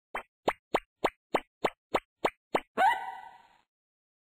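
Cartoon sound effects: nine quick plops, each rising in pitch, about three a second, then a louder tone that glides up, rings and fades out.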